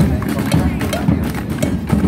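Marching drummers beating drums as they walk past, with repeated low thumps and sharper knocks, over the chatter of a street crowd.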